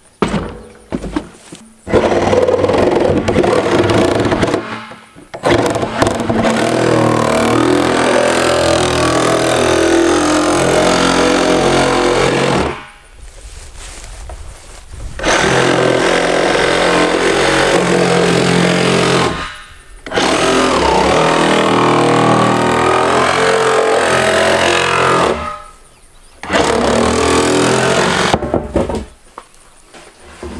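Milwaukee Sawzall cordless reciprocating saw cutting a hole through the closed plastic top of a 55-gallon drum. It runs loudly in long stretches and stops briefly several times as the blade is repositioned, with the longest stop about a third of the way in.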